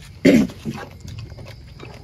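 A dog barks once, short and loud, about a quarter second in, over light clinks of bowls and chopsticks.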